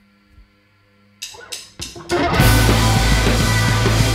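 Faint amplifier hum, then four quick percussive hits about a quarter second apart as a count-in, and a loud punk/emo rock band (electric guitars, bass and drum kit) comes in together about two seconds in.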